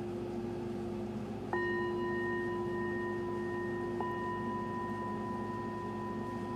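A singing bowl resting on an open palm is struck twice with a padded mallet, about a second and a half in and again about four seconds in. Its low hum rings on steadily throughout, and each strike adds higher ringing overtones that keep sounding.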